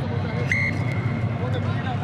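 A referee's whistle gives one short, steady blast about half a second in, over a low, continuous stadium background hum.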